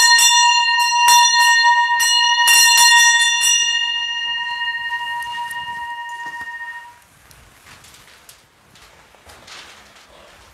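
A small bell rung by hand with about eight quick strikes over four seconds, each ringing on in a clear high tone and fading out by about seven seconds in. It is the bell that signals the start of Mass as the priests come in.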